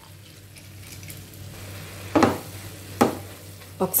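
Cabbage and freshly added soaked moong dal sizzling softly in a nonstick frying pan. Partway through, a wooden spatula strikes and scrapes the pan twice, a little under a second apart, as the mixture is stirred.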